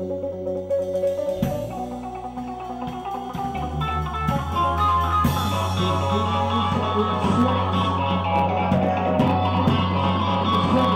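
Live rock band playing: guitar over a drum kit and sustained low notes, the music growing louder and fuller about four seconds in.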